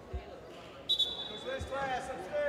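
Gymnasium during a group warm-up on a hardwood court: two dull thuds on the floor, a steady high-pitched tone lasting about a second from around the middle, and short voices echoing in the hall.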